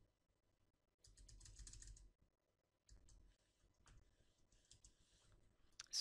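Faint computer keyboard typing: a quick run of keystrokes about a second in, then a few scattered key clicks, as a node name is typed.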